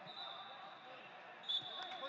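Voices calling out in a large sports hall, with a single thump on the mat about a second and a half in.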